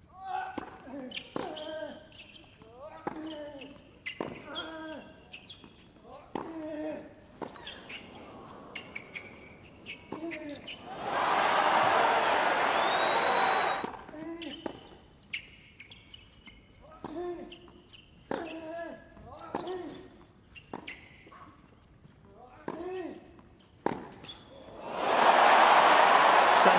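Two tennis rallies on a hard court: racket strikes and ball bounces in quick succession, with the players' short grunts on their shots. Each point ends in crowd applause and cheering, a burst of about three seconds after the first rally and a louder one near the end.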